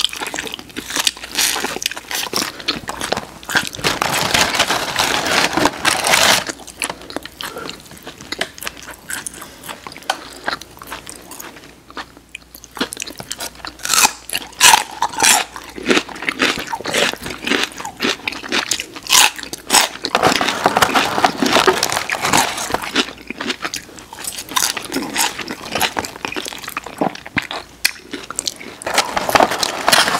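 Two people chewing and crunching boneless fried chicken wings and celery close to the microphone, with many irregular sharp bites and crunches.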